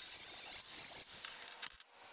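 Angle grinder cutting through a steel bicycle fork, heard as a fairly quiet, steady high-pitched hiss that wavers a little in pitch, ending with a few clicks and stopping abruptly near the end.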